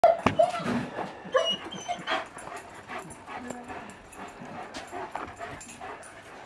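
Dog giving short, high yips and whines, several in quick succession in the first two seconds, then quieter.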